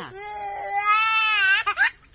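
A young child's long, high-pitched wailing cry, rising slightly and then falling, followed by a few short cries near the end.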